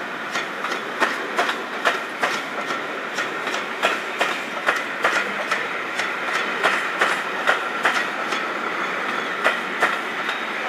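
Passenger coach wheels rolling over the track joints as the train pulls out: a regular clickety-clack of about two clicks a second, with a faint steady high tone beneath.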